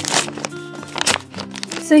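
A paper envelope being torn and crinkled open by hand, in several short rustles, over background music.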